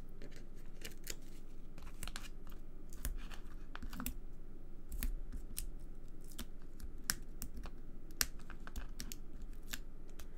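Paper handling: backing strips peeled off foam adhesive dimensionals and a card-stock panel pressed onto a card, with scattered light clicks, crackles and rustles.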